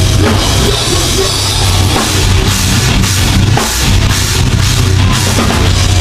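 Metalcore band playing live and loud: distorted guitars, bass and a pounding drum kit, with a brief drop in the low end about three and a half seconds in.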